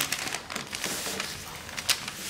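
Rustling and crinkling as orchid plants lying on paper are slid aside across a table, with scattered light clicks and a sharper tap near the end.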